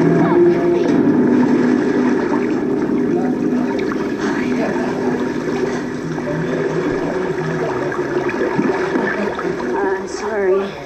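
Television soundtrack heard in a room: a steady watery rushing with indistinct, murmured voices over it.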